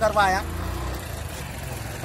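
A steady low hum, like an engine running, heard after a brief bit of a man's voice at the start.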